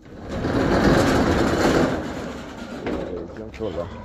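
An edited-in transition sound effect: a rushing noise that swells up and fades away over about two seconds. Voices talking follow in the second half.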